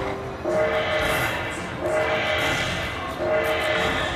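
Video slot machine's win count-up sound as a hold-and-spin bonus pays out: a chord of steady tones, each about a second long, repeating about every second and a half over the hubbub of the casino floor.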